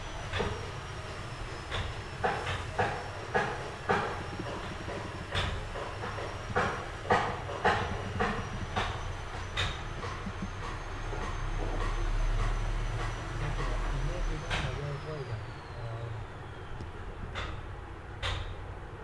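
A series of sharp clicks and taps at irregular intervals, roughly one or two a second, over a steady background; a low rumble swells up in the middle and fades again, and a faint high whistle runs underneath, dropping in pitch near the end.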